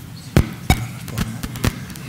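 A series of short, sharp knocks and clicks, about five in two seconds, the two loudest in the first second, over low room hum.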